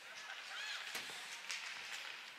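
Ice hockey rink ambience: skates scraping on the ice with a couple of sharp stick-and-puck clacks about a second in and half a second later, under faint voices echoing in the arena.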